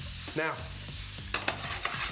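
Rice-flour-coated cauliflower florets sizzling as they shallow-fry in hot oil in a stainless steel frying pan. The pan is being tossed, and a quick run of sharp clicks and taps comes in the second half.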